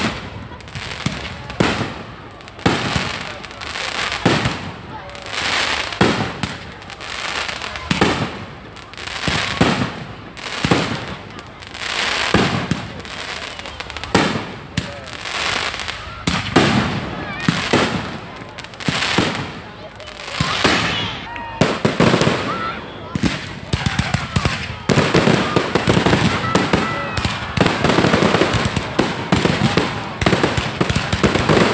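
Fireworks display: loud bangs about once a second, each fading out. Near the end they give way to a dense, continuous barrage of bangs and crackle.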